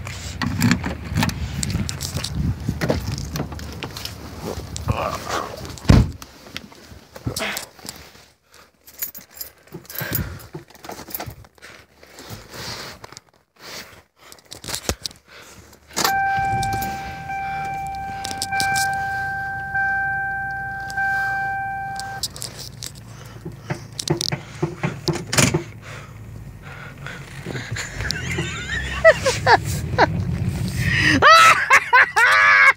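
Keys jangling and scattered clicks and knocks of a car's door and fittings from inside the cabin, with one sharp knock about six seconds in. About halfway through, the car's warning chime sounds as a steady repeated ding for about six seconds, then stops.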